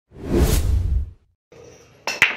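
A whoosh sound effect with a deep rumble under it, swelling and fading over about a second, followed by a moment of dead silence.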